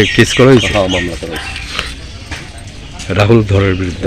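A man speaking, in two stretches with a short lull between.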